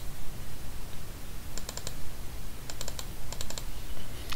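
Light, quick clicking at a computer, in short clusters of two to four clicks about one and a half seconds in and again near the end, as a file is browsed for and picked in an open-file dialog.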